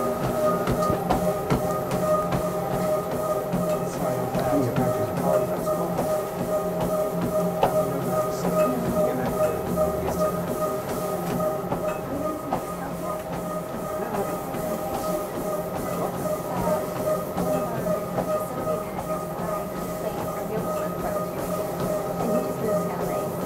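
Motorised treadmill running at speed with a steady whine, and a runner's regular footfalls on the belt.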